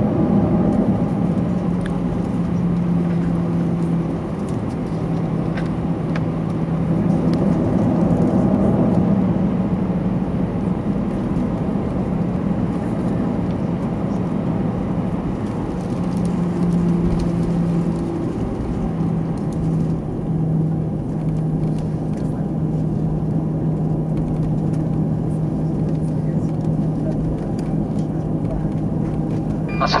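Cabin noise of an Airbus A321 taxiing: the engines running at low taxi power make a steady hum with a low drone over a constant rushing noise.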